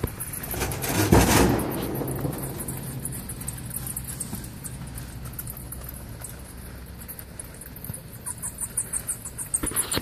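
Bats squeaking and chittering in rapid high-pitched ticks that grow busier near the end, over a low steady hum; a loud noisy burst comes about a second in.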